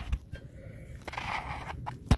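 Fingers rubbing and scraping along the inside lip of a Husqvarna V548 mower's steel cutting deck, feeling for grass build-up; soft, irregular scraping with light handling noise.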